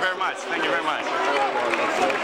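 Several people talking over one another close by, among them a man saying 'thank you very much'.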